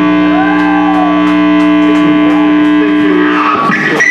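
Electric guitars and bass holding one sustained chord through the amplifiers, ringing steadily, then cut off about three and a half seconds in, as a song ends.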